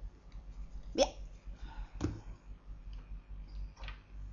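Three short clicks and knocks of small objects being handled, the loudest about a second in, over a low steady hum.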